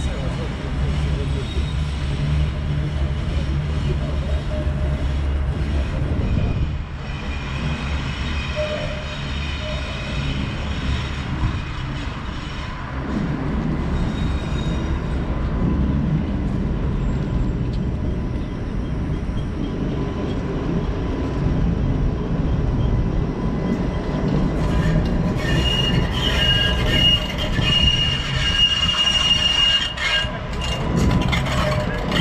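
Yellow Budapest trams running on curved street track with a low rumble; near the end a high, steady wheel squeal as a tram grinds round the curve close by.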